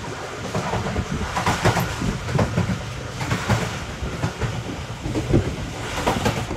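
Pakistan Railways passenger train running at speed, heard from inside the coach: a steady rumble of wheels on the rails broken by frequent, irregular clacks and knocks.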